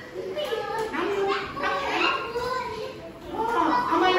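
A group of young children's voices chattering and calling together, several at once.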